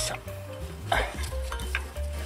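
Steel screwdriver scraping and clinking against a brake pad's backing plate and the caliper's spring clips as the old pad is pried out of a front disc brake caliper, with louder scrapes near the start and about a second in. Background music plays throughout.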